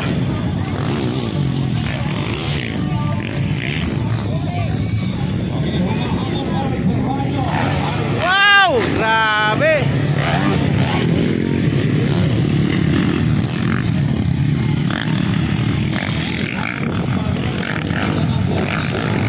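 Several motocross dirt bikes' engines running and revving together on the track. A voice shouts out about eight to ten seconds in.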